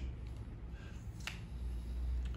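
A single sharp click a little past a second in, over a steady low hum.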